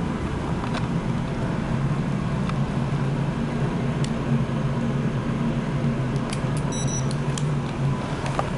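Steady low machinery hum aboard a ship, with a few faint clicks and a brief high electronic beep about seven seconds in.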